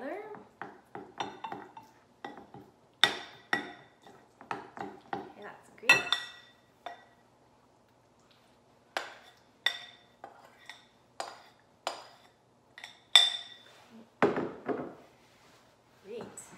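A metal spoon clinking and scraping against glass mixing bowls while a sticky peanut butter mixture is scraped from one bowl into another. The sound comes as a series of sharp, ringing clinks, with a pause in the middle and a duller scrape near the end.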